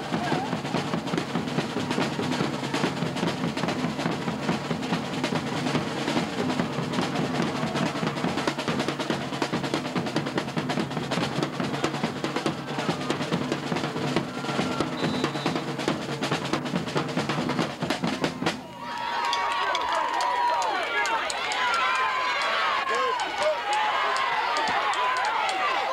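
Marching band drumline playing a fast, steady cadence on snare and bass drums, which cuts off abruptly about three-quarters of the way through. Many crowd voices shouting then take over.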